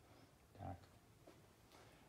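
Near silence: quiet room tone, broken by one short spoken word about half a second in.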